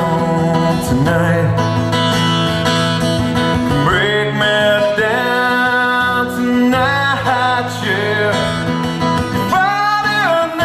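A man singing solo with his own cutaway acoustic guitar, his voice sliding between held notes over the guitar.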